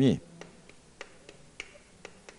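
A man's voice trails off at the very start, then chalk taps against a blackboard while writing: about six short, sharp clicks, roughly three a second.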